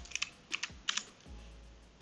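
Computer keyboard keys being pressed: a handful of separate keystrokes in the first second, typing a short terminal command and pressing Enter.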